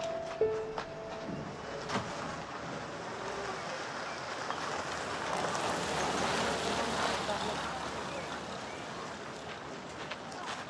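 An old Chevrolet pickup truck drives up, its engine and tyres making a steady noise that grows to its loudest about six to seven seconds in and then eases off.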